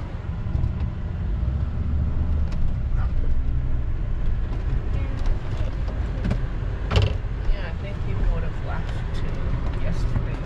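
A 4x4's engine and tyres rumble on a rough dirt trail, heard from inside the cabin. Scattered clicks and knocks come through from the bumpy ground, the sharpest about seven seconds in.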